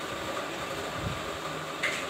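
Steady background hum and hiss, like a running fan, with a short soft rustle near the end.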